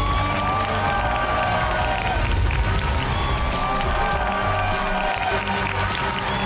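Background music: long held tones that slowly bend in pitch, over a steady low beat.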